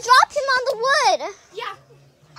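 A child's upset, wordless voice, high-pitched and sliding up and down in pitch, then trailing off with a short fainter sound.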